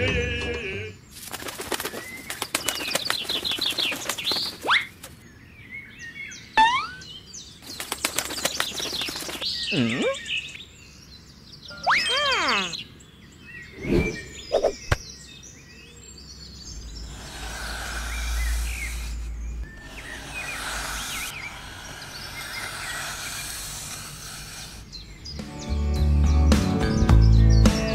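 A string of cartoon sound effects: whooshes, swooping whistle glides with a long falling one and a boing-like wobble, then a few sharp knocks. After that comes about eight seconds of soft, steady scratchy noise.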